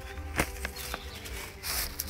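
Scissors snipping lettuce leaves: one sharp snip about half a second in and a lighter one just after. Near the end, a plastic carrier bag rustles as the cut leaves go in.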